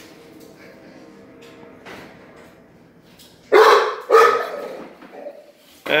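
A dog barking twice in quick succession, about halfway through, loud and echoing slightly in a hard-walled room.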